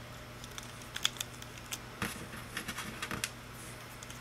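Scattered light clicks and taps as rubber bands are stretched over and let go onto the plastic pins of a Rainbow Loom, with fingers handling the loom, over a faint low steady hum.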